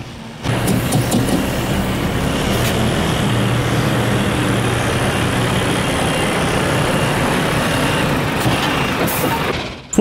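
Heavy truck running under load with the trailer's SAF Intra-Trak hydraulic axle drive engaged: a loud, steady mechanical sound, typical of the hydraulic drive being switched on. It starts about half a second in and fades away just before the end.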